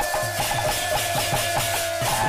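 Kirtan folk music: a barrel drum beaten in a fast, even rhythm of about four strokes a second, with brass hand cymbals striking along with it over a steady held high tone.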